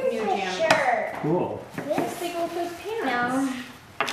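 Children and adults talking indistinctly, with a single sharp click of plastic toy pieces knocking together a little under a second in.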